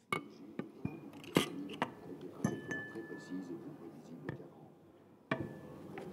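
A run of sharp knocks and glassy clinks that starts abruptly, with a brief thin tone in the middle.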